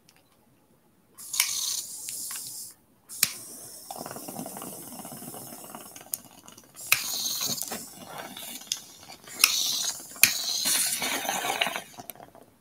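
A bong hit: a lighter clicking and its flame held to the bowl while water bubbles in the bong as smoke is drawn through, in several pulls of a second or more with sharp clicks between them.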